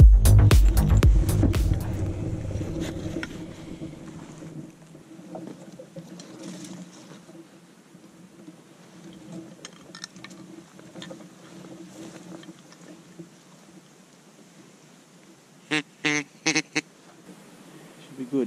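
Electronic dance music fades out over the first few seconds, leaving faint outdoor quiet. Near the end come four short, loud quacks in quick succession, typical of ducks or a hunter's duck call on a marsh before dawn.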